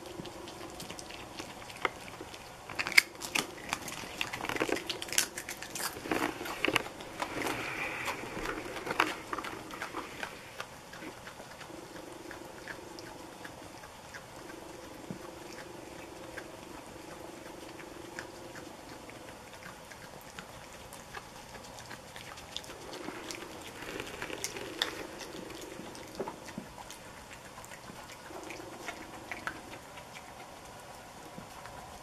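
A Virginia opossum chewing crunchy taco shell: a run of crisp crunches and bites a few seconds in, then a quieter stretch, and another short bout of crunching later on.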